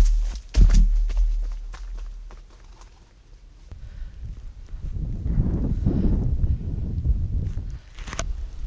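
Footsteps on a dirt coast path, with a few sharp knocks and thumps in the first second. After a quieter spell in the middle, a steady low rustling noise builds through the second half.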